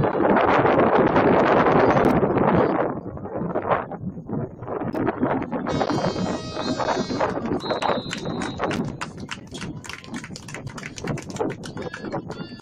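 Sideline noise at a soccer match: a loud burst of crowd noise at the start, then scattered sharp claps and knocks. About six seconds in, as the scoreboard clock runs out, a horn-like tone with many overtones sounds for about a second, followed by a single high whistle blast of about a second.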